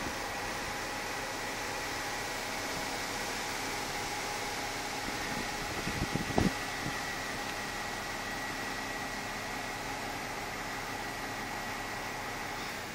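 Steady outdoor background noise: an even hiss with faint steady hum-like tones. A short cluster of low knocks about halfway through is the loudest thing.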